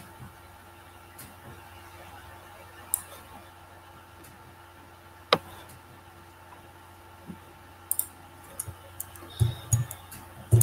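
Scattered clicks of a laptop's mouse and keys over a faint steady room hum, the sharpest click about five seconds in, with a quicker run of soft taps near the end.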